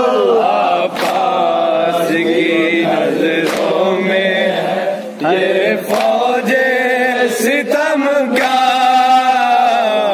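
Men chanting an Urdu noha, a Shia lament for Imam Husain, together in long held notes. Sharp slaps come now and then, hands striking chests in matam.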